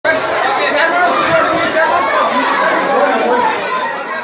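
Crowd of adults and schoolchildren chattering all at once, many overlapping voices at a steady, loud level.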